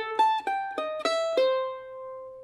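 F-style mandolin picked one note at a time: a quick phrase of about six notes that steps down in pitch, the last one held and left to ring out.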